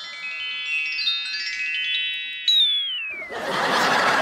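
A musical transition sting of bell-like chime notes climbing step by step, each note left ringing under the next. About two and a half seconds in, a brighter note strikes and slides downward, and near the end a steady rush of noise takes over.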